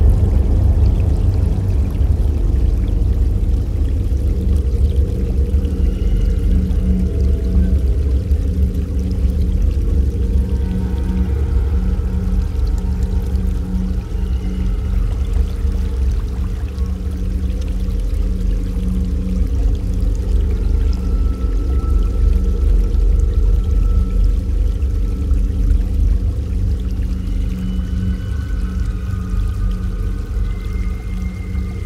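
Background music of slow, sustained low tones, with a few faint higher notes drifting in and out.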